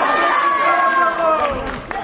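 Spectators shouting loudly, several voices at once, in long drawn-out calls that sink slightly in pitch over about a second and a half.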